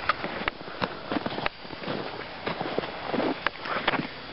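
Footsteps in snow, an irregular run of short noisy strokes, with some handling noise from the camera being carried.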